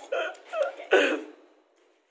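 Three short voice sounds from a person, the last and loudest about a second in, then a pause.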